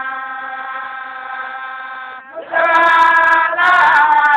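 Baye Fall Sufi zikr chanting: one long sung note held steady, a brief break, then a louder chanted phrase starting about two and a half seconds in.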